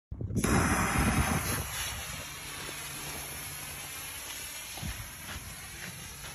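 Whistle firework rocket launching: a sudden loud rush of noise just after the start, then a steadier, quieter high hiss as it flies up and away.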